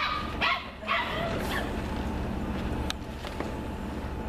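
Border Collie barking, about four short barks in quick succession in the first second and a half, then quieter.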